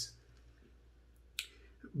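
A brief pause in a man's reading: quiet room tone broken by a single sharp click about one and a half seconds in, with a faint breath-like sound just before his voice returns.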